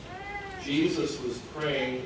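A short, high-pitched, meow-like cry that rises and falls in pitch, followed by a voice speaking.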